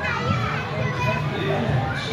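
Many children's voices overlapping: shouts and chatter of kids playing, with no clear words.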